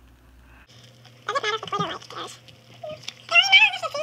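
A child's high voice making two wordless, wavering vocal sounds, one about a second in and a louder one near the end, over a faint steady hum.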